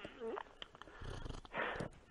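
A man choking up with emotion: a brief catch in the voice just after the start, then a short sharp breath, like a sniff or a sob, near the end.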